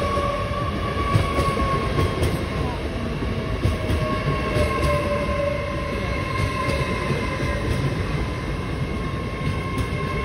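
Passenger train coaches running past close by at speed: a steady rumble and rattle of wheels on the rails, with a steady high whine over it.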